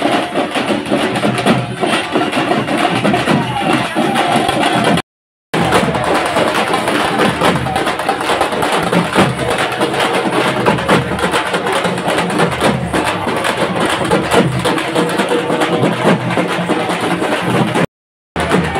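Procession drumming: several hand-held frame and barrel drums beaten with sticks in a fast, dense rhythm. The sound drops out for about half a second around five seconds in, and again at the very end.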